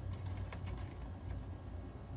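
Quiet truck cab with the engine shut off during an air-brake leakage test: a low steady rumble and a few faint clicks in the first second and a half.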